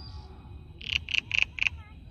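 An animal calling four times in quick succession, short sharp calls about a quarter second apart, starting about midway through, over a steady high tone and faint chirps.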